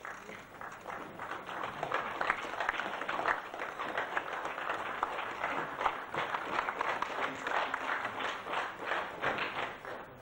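Audience applauding, building up over the first couple of seconds and dying away near the end.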